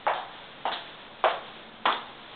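Footsteps walking at an even pace, four steps a little under two a second, each a short sharp click.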